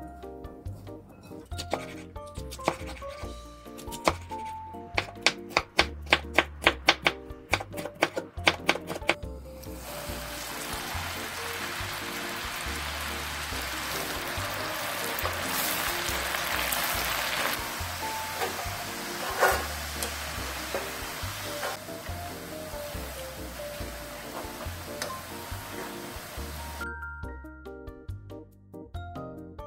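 Background music throughout, with a quick run of sharp clicks in the first third. Then burdock strips coated in potato starch deep-frying in a wok of hot oil give a steady crackling sizzle from about ten seconds in until shortly before the end.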